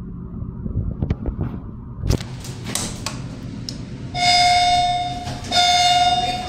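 A knock about two seconds in, then a loud, steady buzz-like tone sounds twice, each more than a second long, with a short break between.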